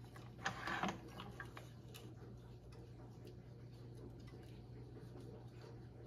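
Tennis string being woven by hand through the main strings of a racquet: a short burst of string rubbing and zipping through about half a second in, then scattered light clicks and ticks of string against string, over a steady low hum.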